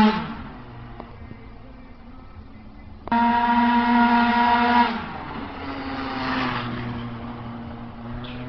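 Tuned two-stroke scooter engine at high revs, dying away as the scooter rides off. About three seconds in, a steady high-pitched full-throttle note cuts in suddenly, holds for about two seconds, then drops back to a fainter engine sound.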